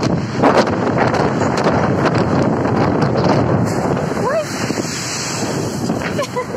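Storm wind buffeting the microphone over heavy sea surf breaking against a concrete seawall, a steady loud rush with no let-up.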